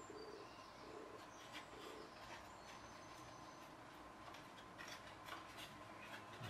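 Quiet garden ambience: a pigeon cooing a few soft notes in the first couple of seconds, with faint thin bird chirps. There are a few faint rustles as the foam gliders are handled.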